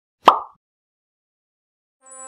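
A single short cartoon 'plop' sound effect, a quick pop about a quarter second in that dies away within a fraction of a second; otherwise silence.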